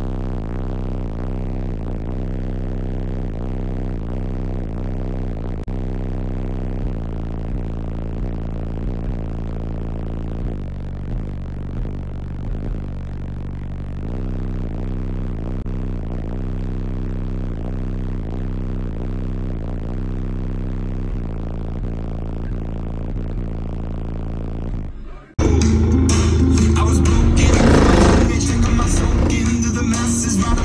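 Bass-heavy electronic music played loud through a car's system of eight 10-inch Skar subwoofers, with steady stepped bass notes heard inside the cabin. About 25 seconds in, it cuts to a louder, fuller clip of the system playing bass-heavy music, heard from outside the car.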